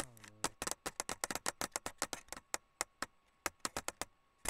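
A quick, irregular run of sharp clicks and taps, about six to eight a second, densest in the first two seconds and thinning out toward the end.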